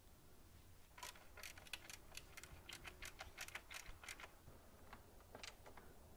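Hand screwdriver turning a large-headed screw through the steel saw blade into the wooden base: a quick run of faint clicks for about three seconds, then a few scattered clicks near the end.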